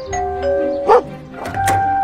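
Doorbell chime, a higher tone stepping down to a lower one, over background music, with a short sharp knock-like sound about a second in.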